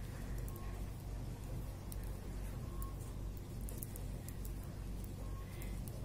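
Knitting needles working yarn: a few faint, scattered ticks over a steady low hum.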